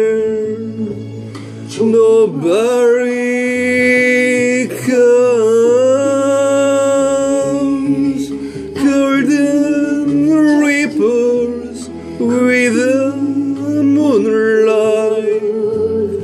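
A man singing a slow ballad in English over an instrumental backing track, holding long notes with vibrato and gliding between them, with short breaks between lines.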